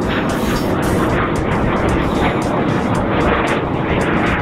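A loud, steady engine roar of an aircraft passing overhead, unbroken and even.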